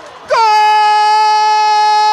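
A football commentator's drawn-out goal cry: after a short breath, one long loud "goool" held on a single high pitch.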